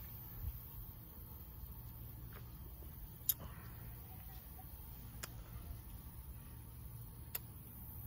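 Faint steady low rumble, with three sharp clicks spread about two seconds apart.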